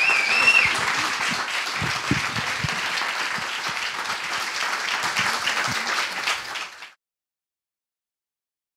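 Audience applauding, a dense patter of many hands clapping, which cuts off abruptly about seven seconds in.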